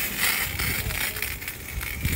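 Self-serve car wash pressure washer running: a steady hissing rush of spray over a low pump rumble, a little louder in the first second.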